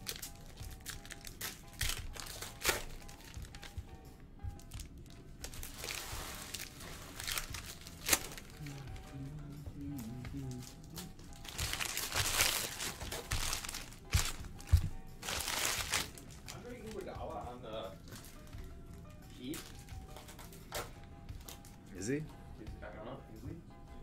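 Trading-card pack wrappers crinkling and tearing as Donruss football packs are ripped open, in three loud bursts of about a second each, with light clicks and taps of cards being handled and stacked.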